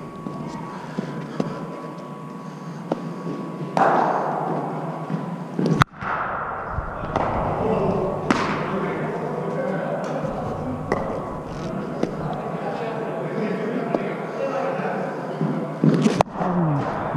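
Cricket practice nets: a few sharp cracks and thuds of a hard cricket ball off bats, pads and netting, the sharpest about six seconds in and a cluster near the end, over a steady murmur of voices in a large hall.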